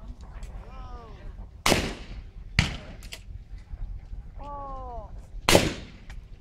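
Trap shooters calling for targets and firing shotguns. A short shouted call about a second in is followed by a sharp shotgun report and a fainter one a second later. A second call about four and a half seconds in is followed by the loudest report.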